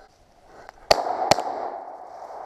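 Shotgun fired twice in quick succession, two sharp shots under half a second apart about a second in, followed by an echo that dies away.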